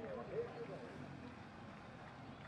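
Faint background voices talking, which fade out about half a second in, over a steady low outdoor hiss.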